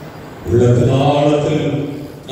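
A man's voice praying aloud into a microphone: one long, held phrase at a nearly level pitch, starting about half a second in.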